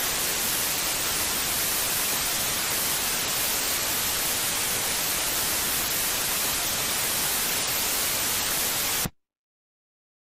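Loud, steady static hiss like an untuned television, which cuts off abruptly about nine seconds in, leaving dead silence.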